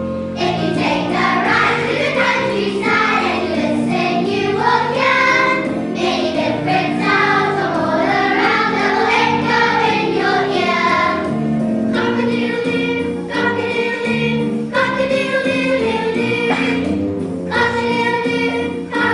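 Young children's choir singing with instrumental accompaniment; the voices come in just after the start over held accompanying notes.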